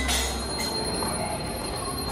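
Temple aarti music held as a steady ringing tone over a low drone, with no beat of hand cymbals or tambourine in these seconds.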